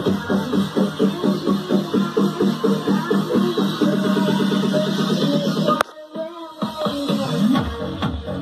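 Music with a regular beat playing through a salvaged loudspeaker cabinet driven from a phone; the sound cuts out abruptly for under a second about six seconds in, then comes back.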